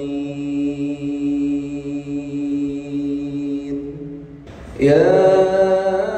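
A man's voice reciting the Quran in a melodic, chanted tajweed style. He holds one long, steady note for about three and a half seconds, pauses briefly, then starts the next verse louder near the end.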